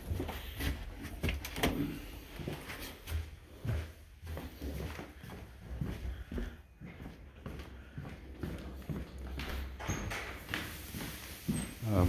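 Footsteps on bare wood floors and handling noise from a hand-held camera as it is carried through the rooms: irregular soft knocks and clicks over a low rumble.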